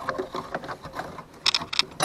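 A seatbelt retractor being handled and lined up by hand: irregular light clicks and rustles of the unit and its webbing, with a few sharper clicks about one and a half seconds in.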